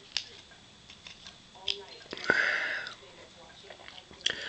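Plastic parts of a Transformers Henkei Cyclonus figure clicking as it is folded by hand, with one sharp click just after halfway, followed by a short breath through the nose.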